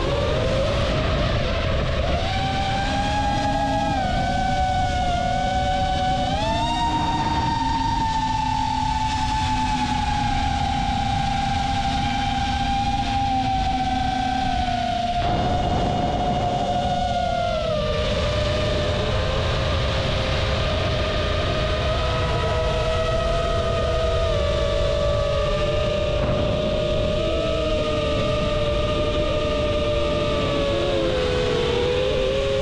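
Quadcopter drone's electric motors and propellers whining in flight, over a low rush of wind. The pitch steps up a few times in the first seven seconds, drops about eighteen seconds in, and sinks slowly near the end.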